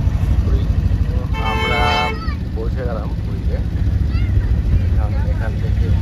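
Low rumble of a car's engine and road noise heard from inside the cabin while driving in town traffic. One steady vehicle horn blast of under a second sounds about a second and a half in.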